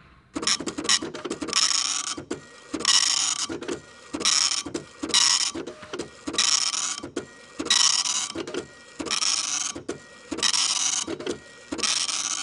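Mechanical printing chatter like a dot-matrix printer: a run of short, rasping bursts about a second and a quarter apart, with sharp clicks between them.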